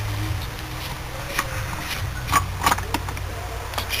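Adjustable spanner clicking on the steel bleed screw of an M30 engine's thermostat housing as it is loosened to bleed trapped air from the cooling system: a few short metallic clicks over a low steady hum.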